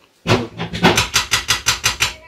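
Wooden spatula knocking rapidly against a stainless steel frying pan, about a dozen quick sharp strokes in a little under two seconds.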